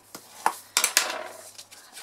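Bone folder rubbed along the fold of embossed cardstock to burnish the crease: a couple of light clicks, then a short scraping rub about a second in that fades away.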